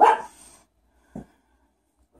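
A dog barking twice: a loud bark at the start, then a shorter, fainter bark about a second later.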